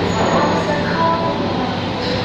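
Steady indoor restaurant background noise: a dense, even hum with faint, indistinct voices in it.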